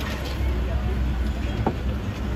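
Steady low rumble of outdoor street noise with faint background voices, and one sharp click near the end.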